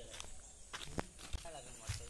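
Footsteps on dry fallen leaves over hard earth, with a few sharp crackles about halfway through and near the end.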